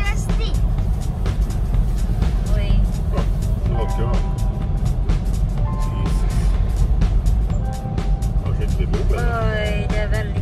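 Steady low rumble of a car driving, heard inside the cabin, under background music with a voice in it that rises again about nine seconds in.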